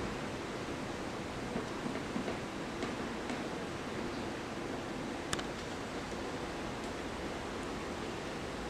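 Faint steady hiss with a few light clicks; the clearest click comes a little past halfway.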